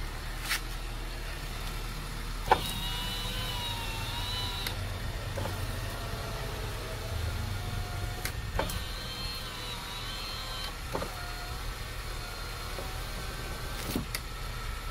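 Repaired power window motor in a 2005 Honda Jazz door, freshly fitted with new brushes, running the glass in two runs of about two seconds each. Each run starts with a click and the whine cuts off suddenly, with fainter motor whine after each run and a steady low hum underneath.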